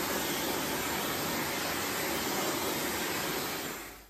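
Handheld hair dryer blowing steadily, an even rushing whoosh that fades out near the end.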